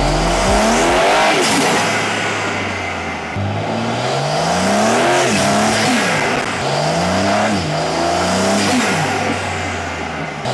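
BMW S58 twin-turbo inline-six, fitted with a Dinan carbon fiber cold-air intake, accelerating hard as the car drives past. Its pitch climbs and drops back several times as it revs up through the gears.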